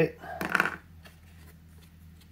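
A brief crinkling rustle of gold reflective foil heat-wrap tape being pulled from its roll and handled around a rubber intake pipe, about half a second in, then only faint handling.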